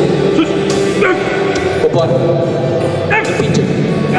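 Short shouted calls from several voices over steady background music, with sharp barked shouts about a second in and again just after three seconds.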